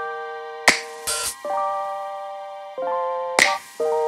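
Electronic intro jingle for an animated subscribe graphic: sustained chords that change a few times, cut by two sharp clicks near the start and near the end, the first followed by a short hiss.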